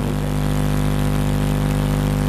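A steady, unchanging low hum with many even overtones, at a constant pitch.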